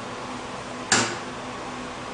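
Benchtop microcentrifuge lid unlatching and swinging open with a single sharp click about a second in, over a steady hum; the one-minute spin is finished.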